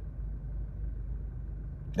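Steady low rumble of a car engine idling, heard from inside the cabin.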